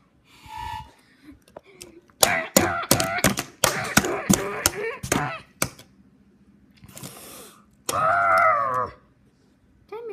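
A child's voice making wordless sound-effect cries for toy trains, mixed with a run of sharp clicks and knocks in the middle. Near the end comes one loud cry that rises and falls.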